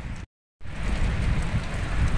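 Steady rain falling, with a low rumble underneath. The sound cuts out completely for about a third of a second near the start, then the rain resumes.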